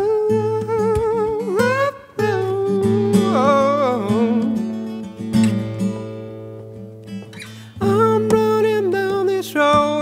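Cutaway Lag acoustic guitar being played under a man singing long held, wavering notes. The voice drops out for a few seconds in the middle while the guitar rings on more quietly, then comes back near the end.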